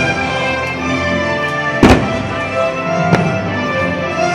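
Fireworks show music playing throughout, with two firework shell bursts: a loud one about two seconds in and a lighter one about a second later.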